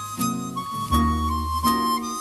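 Chromatic harmonica playing a jazz melody in sustained high notes, backed by a small band of upright bass, piano, guitar and drums keeping a steady beat.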